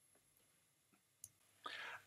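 Near silence with one faint computer-mouse click a little over a second in.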